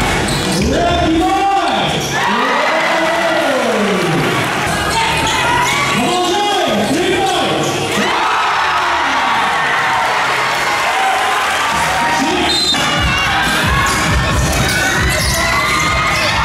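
A basketball being dribbled on an indoor court, under crowd noise and a loud backing of slow sweeping tones that rise and fall in pitch.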